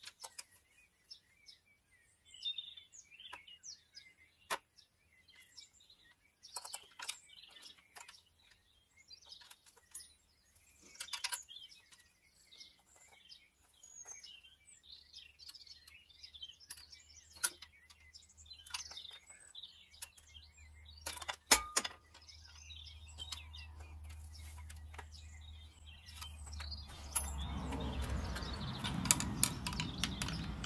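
Faint clicks and taps of a flat-blade screwdriver working the plastic injector return-line connectors on a BMW N57 diesel engine, with a few sharper clicks and small bird chirps behind. A low rumble builds toward the end and is loudest in the last few seconds.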